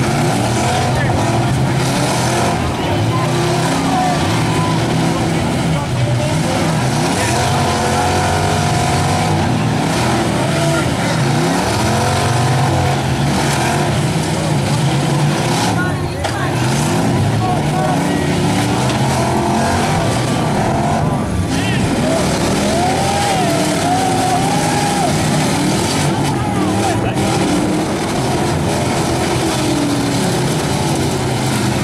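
Several demolition derby car engines running and revving at once, with pitches rising and falling over one another without a break.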